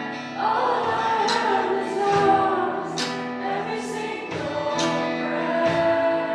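Live worship band: women's voices singing together over acoustic guitar strummed on a steady beat of about one stroke a second.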